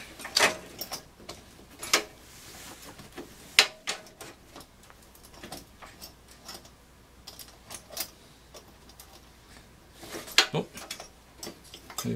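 Irregular small clicks and knocks of metal and plastic as a spring-loaded CPU cooler retention clip is worked into its slots on a PC motherboard, with the sharpest knock about three and a half seconds in and a quick run of clicks near the end.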